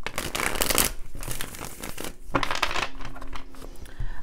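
A tarot deck being riffle-shuffled by hand: a dense, fluttering rattle of cards, loudest in the first second and again about a second and a half in, with softer card-handling clicks in between.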